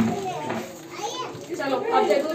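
Children's voices chattering and playing, mixed with adult talk in a room; the voices dip for a moment mid-way and pick up again near the end.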